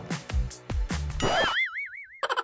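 Background music with a beat. About a second in, a cartoon sound effect comes in: a warbling whistle that wavers up and down several times as the music cuts out.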